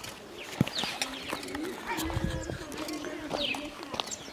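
Outdoor village ambience: small birds chirping in short falling notes, with a low, drawn-out wavering call in the middle, like a dove cooing or a distant voice, and a few scattered clicks and knocks.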